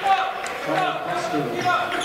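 Indistinct voices in a gymnasium, quieter than a close voice and echoing in the hall.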